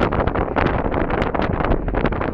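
Wind buffeting the microphone: a loud, steady rumble broken by a rapid run of crackling gusts.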